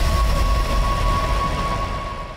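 Sound effect of a show's intro sting: a steady rushing noise with one held high tone, fading away near the end.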